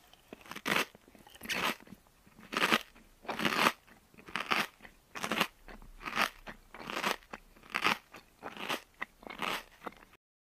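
A child chewing a small red snack, in a steady run of short chewing strokes a little faster than once a second.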